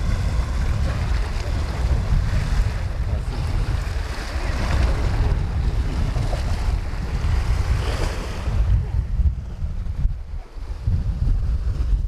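Sea waves washing over and breaking against a rocky shore, with wind buffeting the microphone in a constant low rumble. The higher hiss of the surf thins out about nine seconds in.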